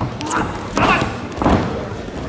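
Thuds of wrestlers' feet and bodies hitting a wrestling mat during a leg attack and scramble, with voices calling out in a large hall.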